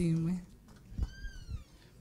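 A handheld microphone being passed between speakers, giving a few low bumps, while a voice trails off at the start. About a second in comes a faint, high, falling cry.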